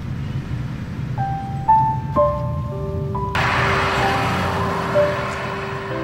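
Soft piano music begins with single held notes about a second in, over the steady low rumble of a car on the road; a fuller wash of sound joins about halfway through.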